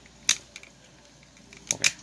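Hard plastic ratchet clicks from the toe joint of an MP-29 Shockwave action figure as the toe is bent through its positions: one click about a third of a second in, then two quick clicks near the end.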